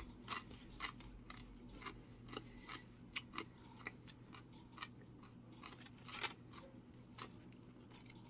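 A man chewing a mouthful of tortilla chips: faint, irregular crunches and crackles.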